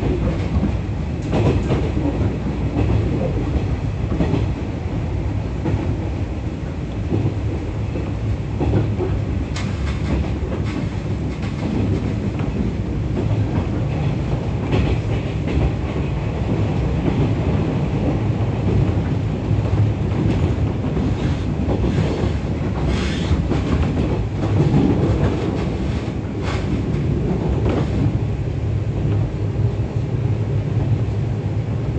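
Interior running noise of a JR 415-series electric multiple unit at speed: a steady rumble of wheels on rail, with scattered clicks from rail joints.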